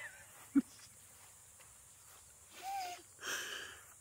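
Quiet pause broken by a single click about half a second in, then a brief wavering hum and a short breathy burst near the end: a person's stifled laughter.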